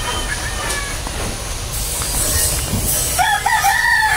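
A rooster crowing near the end: one held, high-pitched call over a steady outdoor background.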